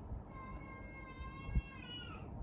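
A cat meowing: one long, drawn-out meow held on a steady pitch that bends near the end.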